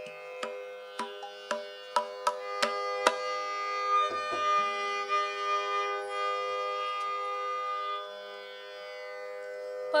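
Tanpura drone: its strings plucked in turn, sharp onsets for the first three seconds, then ringing on steadily, with a higher note held through the middle. No singing or drumming over it.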